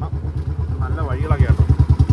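A small motorcycle engine running at a steady low speed, a fast even putter of about a dozen beats a second. A person's voice sounds over it.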